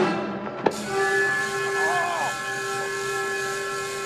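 Film soundtrack: a sharp crack about two-thirds of a second in, then a steady hiss with several steady tones held over it, and a brief voice-like call about halfway through.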